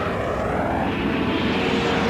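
Aircraft engine flyover sound effect: a loud, steady engine drone with a whooshing sweep that rises in pitch and starts to fall away near the end.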